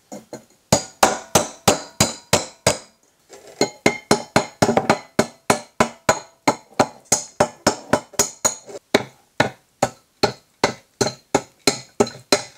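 Repeated light metal-on-metal taps, about three a second, with a brief metallic ring after each: a steel rod striking a freshly cast bell-bronze bell to knock the investment mold off its crown. The tapping breaks off briefly about three seconds in, then carries on.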